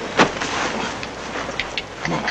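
A rider mounting a saddled horse: a sharp thump just after the start, then scattered light knocks and clicks of hooves and tack.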